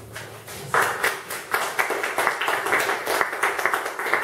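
Audience applauding with hand claps, beginning about a second in just after the last guitar chord fades.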